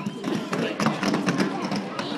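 Quad roller skates clacking and rolling on a wooden rink floor as a group of skaters sprints off the start line, a rapid run of sharp wheel and toe-stop strikes.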